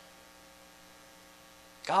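Faint, steady electrical mains hum made of several even tones. A man's voice starts near the end.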